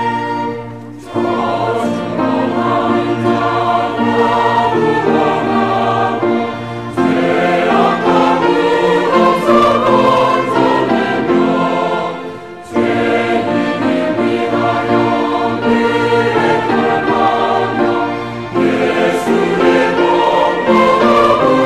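Mixed church choir singing a Korean hymn in harmony, accompanied by violins and a small string ensemble. The music dips briefly between sung phrases, about a second in and again about two-thirds of the way through.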